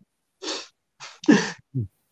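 A person's short breathy vocal outbursts: a soft burst about half a second in, then a louder one about a second later that ends in a brief falling voiced sound.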